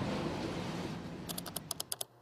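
A passing freight train's rumble fades out over the first second. Then about eight quick clicks of computer keyboard keys are typed in a rapid run.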